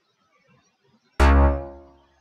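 A single synth bass note from a downloaded Future House bass preset in LMMS, sounded once as a note is clicked into the piano roll. It comes in sharply about a second in and fades out within about a second. Before it there is near silence.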